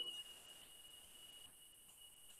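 Near silence: room tone, with a faint high steady tone that fades out within the first half second.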